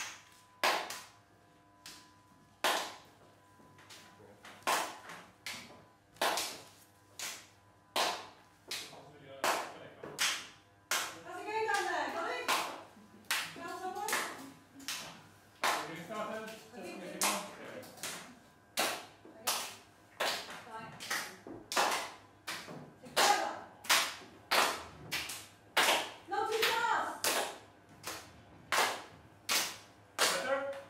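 Hands clapping out a clapping game: sharp single claps, sparse at first and coming faster as it goes on, with soft voices now and then between them.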